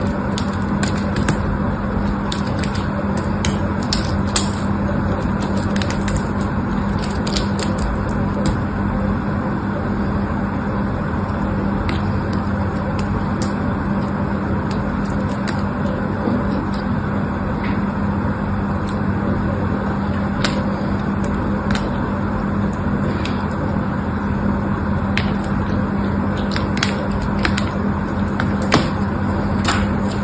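Small blade shaving thin slivers off a dry bar of soap: a run of sharp crackles and clicks, dense in the first several seconds and sparser later, over a steady hiss with a low hum.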